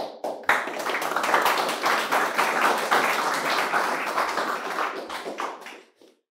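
A small audience applauding: a few scattered claps, then steady clapping for about five seconds that dies away near the end.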